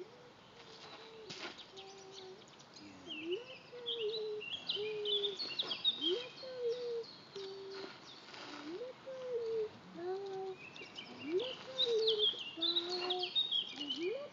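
A pigeon cooing in repeated low phrases, each a rising note followed by steadier ones. Songbirds chirp in quick high runs about three seconds in and again from about ten seconds in.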